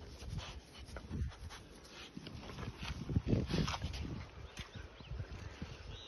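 A dog close to the microphone, making short, irregular soft noises, with no barking.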